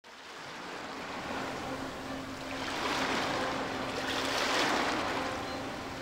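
Sea ambience of waves and wind that fades in from silence and swells gently, with a faint steady low hum underneath.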